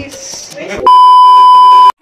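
A loud, steady electronic bleep on one pitch, like a censor bleep, comes in almost halfway through, holds for about a second and cuts off abruptly, after a moment of voices.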